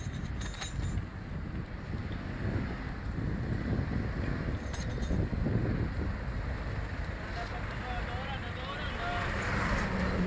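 City traffic at a busy intersection: a steady din of passing buses and cars, with short metallic rattles from the bicycle and its wire basket in the first second and again about five seconds in. Faint voices of people nearby toward the end.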